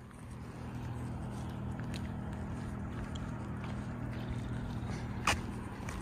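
A steady low motor hum with a few held tones, coming in over the first second and then holding level, with one sharp click about five seconds in.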